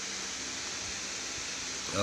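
Steady, even background hiss with no distinct event in it.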